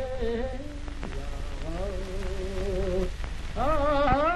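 A solo voice singing long, drawn-out notes with a wavering pitch, sliding up into each new note, in the manner of a Mongolian long song. Under it runs the steady hiss and low hum of an old optical film soundtrack.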